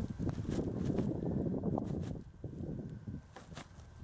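Plastic trash-bag liner crinkling and soil shifting as a soil-filled bin is handled and tipped over, with a few light knocks. The rustle is strongest for the first two seconds, then fainter.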